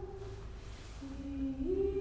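A woman's voice humming long held notes: one note fades out, then a lower note enters about a second in and steps up in pitch near the end.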